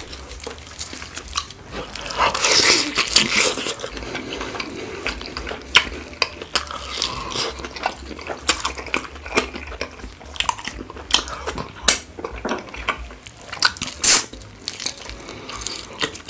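Close-miked ASMR eating sounds: barbecue-sauced rotisserie chicken pulled apart by rubber-gloved hands and eaten, with wet, sticky smacks and sharp clicks throughout. The sounds are busiest about two to four seconds in, and there is one sharp loud click near the end.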